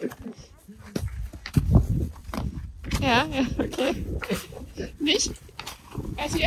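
A person's voice in short bursts of untranscribed speech, with a brief low rumble about a second and a half in.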